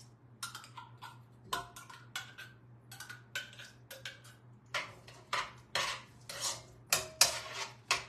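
A cooking utensil clinking and scraping in a skillet as spaghetti sauce is worked into partly frozen ground meat: irregular light clicks, with several longer scrapes in the second half.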